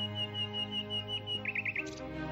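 A small songbird: a high, rapid trill lasting about a second, then four quick downward chirps in a row, over soft sustained background music.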